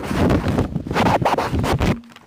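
Loud, irregular rustling and crinkling of large paper sheets handled close to a table microphone. It cuts off abruptly at the end.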